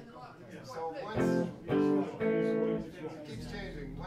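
Electric guitar playing a short phrase of three struck chords, each ringing for about half a second, starting about a second in, over low talk in the room.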